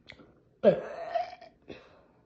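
One drawn-out burp-like vocal sound from a person, lasting nearly a second, starting with a quick drop in pitch and then holding steady, followed by a short tick.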